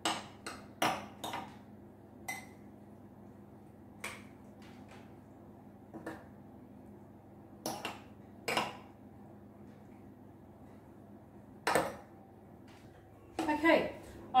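Metal spoon clinking and scraping against a ceramic mixing bowl and metal mini muffin tins while quiche mixture is spooned into the cups: short, sharp clinks at irregular intervals, several close together in the first couple of seconds and then one every second or two.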